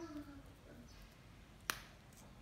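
A fresh green bean snapped by hand: one sharp, crisp snap near the end. A murmured 'mm-hmm' trails off at the start.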